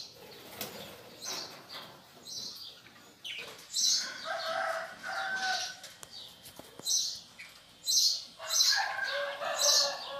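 Budgerigars chirping and fluttering their wings: short high chirps scattered throughout, with longer, steadier calls about four seconds in and again near the end.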